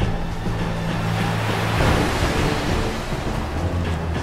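Rushing ocean water that swells to a peak about two seconds in and then ebbs, as a submarine dives below the surface, over low sustained music.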